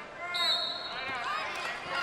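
Volleyball arena crowd murmur with faint background voices, under one long, steady, high whistle blast of about a second, fitting the referee's whistle that authorizes the next serve.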